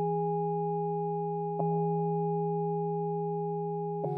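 Music score of sustained, pure ringing tones that hold steady and fade slowly, struck again about one and a half seconds in.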